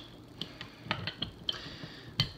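A few faint, light clicks and ticks as a glass bottle and a beer glass are handled, spread irregularly across two seconds.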